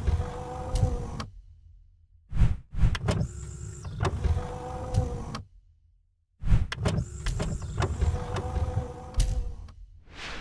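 Intro animation sound effect: a motorised whirring slide with clicks, like an electric window mechanism, played over and over in blocks of about three seconds separated by short silences.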